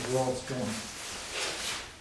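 A voice speaking briefly, then about a second of faint rustling and handling noise.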